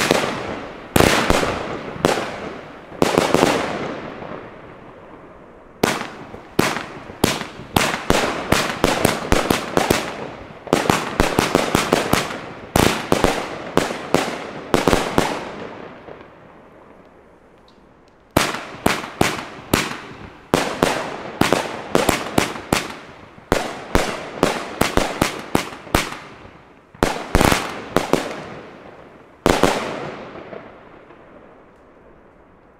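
Pyroland Hair Force One firework battery firing a long string of shots that burst into gold glitter, each bang fading out behind it. The shots come in three volleys, with short lulls about four seconds in and again about sixteen seconds in, and the middle and last volleys fire fast, several shots a second.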